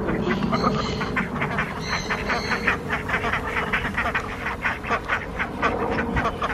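A flock of Indian Runner ducks quacking continuously, many short calls overlapping.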